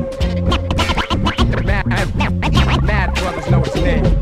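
Turntable scratching: a vinyl record pushed back and forth by hand in quick rising and falling sweeps, cut in and out over a hip-hop beat with a steady held tone and heavy bass.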